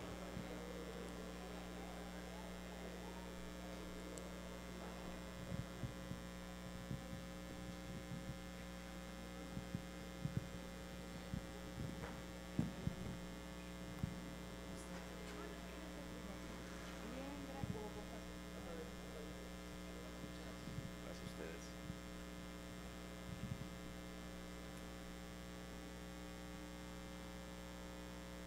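Steady electrical mains hum made of many even tones, with a few faint, scattered knocks and indistinct sounds over it.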